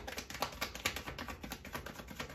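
A deck of tarot cards being shuffled by hand, the cards giving quick, irregular clicks and slaps, several a second.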